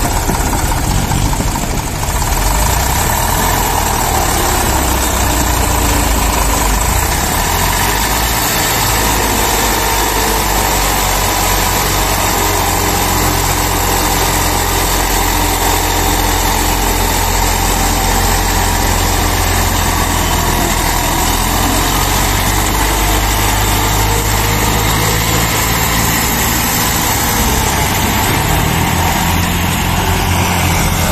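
Eicher tractor's diesel engine running hard under heavy load as it pulls two sugarcane-laden trailers, a loud, steady engine note.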